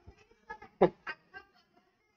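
A man chuckling softly: a few short, quiet laughs about half a second to a second in.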